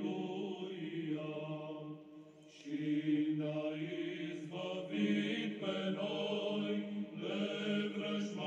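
Slow choral chant with long held notes, dipping quieter about two seconds in and coming back louder half a second later.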